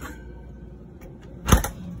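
A steady low hum with a single sharp thump about one and a half seconds in.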